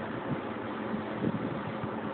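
Steady background noise with a faint low hum and a few soft knocks, without clear events.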